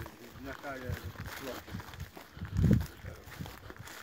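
Faint man's voice at a distance, with footsteps on soft ground and one heavier low thump about two-thirds of the way in.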